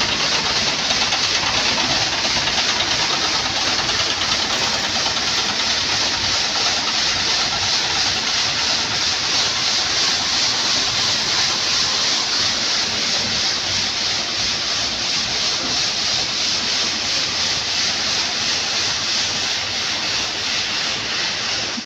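Escorts Hydra 10 pick-and-carry crane's diesel engine running steadily under load as the crane lifts a bundle of stone slabs, an even mechanical noise with a strong hiss.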